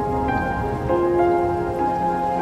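Soft instrumental background music: held notes that change about once a second, over a low, rain-like noise.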